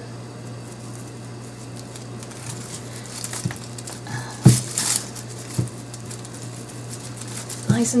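Twine being wrapped and pulled tight around a bundle of dry twigs, with soft rustling and a few light clicks and crackles of twig, the sharpest about four and a half seconds in, over a steady low hum.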